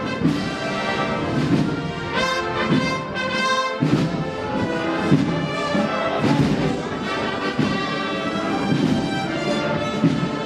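A Spanish processional wind band (banda de música) playing a processional march, with the brass carrying a sustained melody over low accompaniment.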